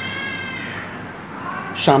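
A long, high-pitched drawn-out call, nearly steady and sliding slightly down in pitch, fading out a little under a second in. A second, lower tone follows near the end.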